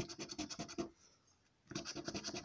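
A large metal coin scratching the scratch-off coating on a paper scratchcard in quick, rapid strokes. It stops for about a second midway, then starts again.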